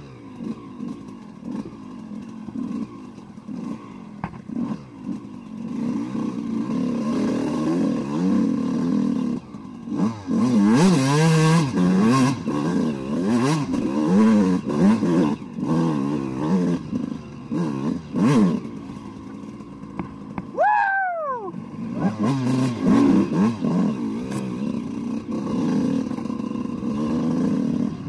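Single-cylinder two-stroke dirt bike engine (a 2002 Suzuki RM125 with an Eric Gorr 144 big-bore kit) revving up and down as the throttle is worked on a trail ride, its pitch rising and falling continually. It is loudest about ten to twelve seconds in. About twenty seconds in the throttle is shut, the pitch drops sharply and the sound dips briefly before the engine picks up again.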